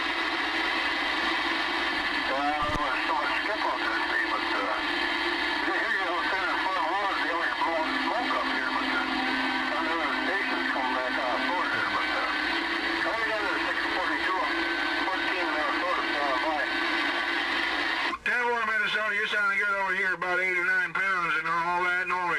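Galaxy DX-2547 CB base station's speaker receiving a distant station: a weak, garbled voice buried in static, coming through clearer and stronger about 18 seconds in.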